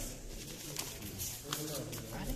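Low, indistinct voices talking in the background, with a couple of short sharp clicks.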